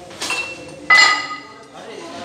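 Metal gym weights clinking: a light knock, then about a second in a sharp, loud metallic clink that rings on briefly.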